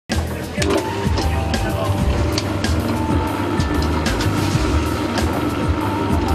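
Background music with a regular beat, over the steady low hum of a large stand mixer's motor running.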